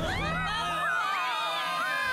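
Background music with steady held tones under many cartoon voices whooping and shrieking at once, their pitches swooping up and down.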